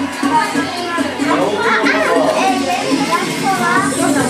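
Many people's voices talking and calling over one another in a room, children's voices among them, with music faintly underneath.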